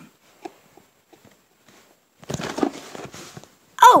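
A few faint ticks, then, a little past halfway, about a second of rustling and scraping as a cardboard Lego set box is handled and shifted.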